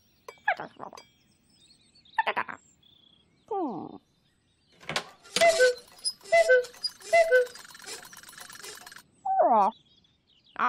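A cuckoo clock's bird calls 'cuckoo' three times about a second apart, each call stepping down from a higher note to a lower one, over a clatter of clockwork. Before the calls come a few short sliding sounds that fall in pitch.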